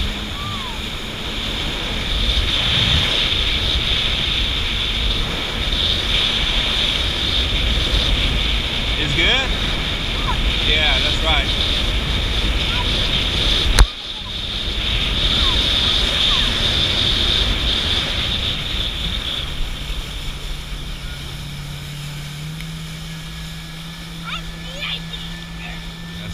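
Jet ski running under way, with water rushing past and wind on the microphone. A sharp click comes about halfway through, and from about three-quarters of the way a steady engine hum steps up in pitch as the overall noise eases.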